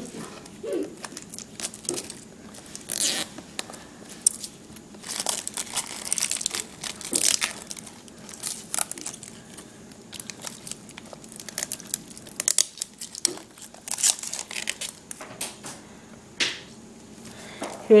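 Plastic packaging crinkling and rustling as hands handle a new tablet still wrapped in protective film, with irregular crackles and a short tearing sound.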